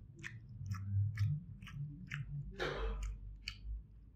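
A person chewing a mouthful of egg fried rice with the mouth closed: soft wet smacking clicks about twice a second, with one longer breath out about two and a half seconds in.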